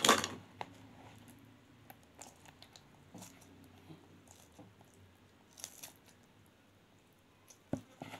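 Hands scooping rice stuffing from a plastic bowl and pressing it into a hollowed vegetable: faint wet squishes and small clicks. There is a louder knock right at the start.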